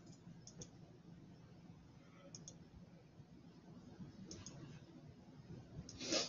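Near silence: a low steady room hum with faint, short clicks at irregular times, most of them in quick pairs, like computer mouse clicks.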